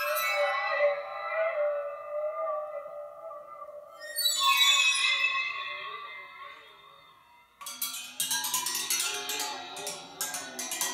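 Waterphone bowed with water inside its resonator: two long bowed tones, each starting with shrill, high overtones that slide in pitch and then fade, the lower pitches wavering as the shifting water changes the resonance. About eight seconds in it turns to a rapid clatter of short, sharp strokes on the rods.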